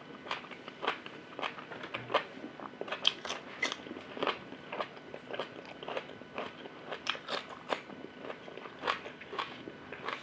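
A person chewing crunchy food close to the microphone: a steady run of crisp crunches, about two a second.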